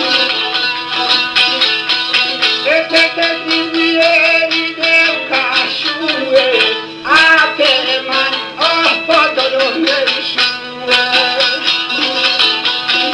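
Albanian folk song: a plucked two-string long-necked lute (çifteli) plays a quick repeating figure throughout, and a man's voice comes in about three seconds in, singing a line with sliding, ornamented notes that ends shortly before the close.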